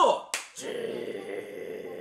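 A single sharp snap, then a steady sizzling hiss, the 'juu' of a hamburger patty frying.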